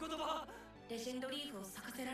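Anime character dialogue in Japanese, a voice speaking over background music from the episode.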